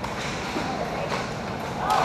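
Roller hockey game in an echoing rink: a steady din with a few faint clacks of sticks and puck and distant voices, the crowd starting to cheer near the end.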